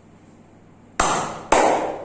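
Two sharp hand slaps on a bare back, about half a second apart, each trailing off briefly.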